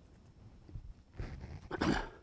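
A man clearing his throat once near the end, after about a second of quiet room tone.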